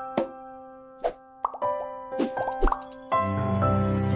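Outro jingle: a handful of bright popping sound effects over held musical tones, then a fuller music bed comes in about three seconds in.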